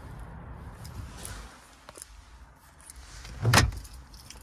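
A single short thump inside a car's cabin about three and a half seconds in, over a low steady vehicle rumble.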